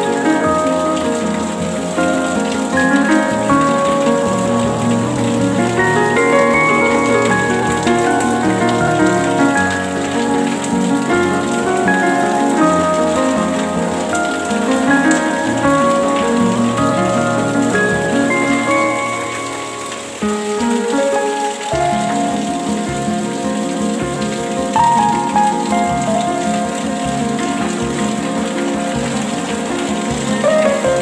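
Steady rain falling under slow, melodic relaxation music with sustained notes. The music dips briefly and shifts to new notes about twenty seconds in.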